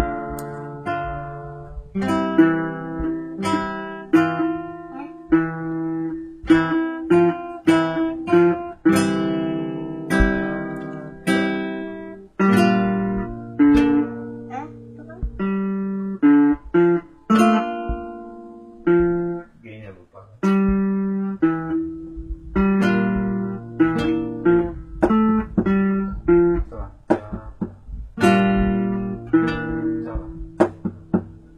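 Acoustic guitar music: plucked notes and strummed chords, each ringing and dying away, in a steady run.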